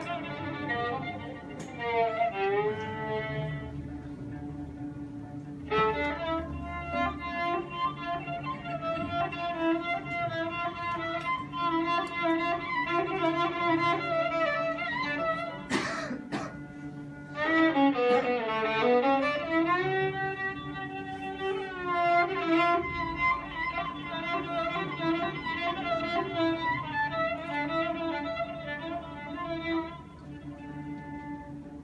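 Violin improvising an Arabic taqsim, bowed melodic phrases with sliding notes, including a long downward then upward slide past the middle, over a steady low held note. There is a single sharp knock a little past the middle.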